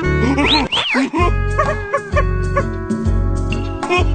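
Cartoon soundtrack: background music with a pulsing bass beat, over which the animated larva characters make wordless, yelping vocal noises that swoop up and down in pitch. The loudest and highest swoops come about half a second to a second in, with smaller ones after.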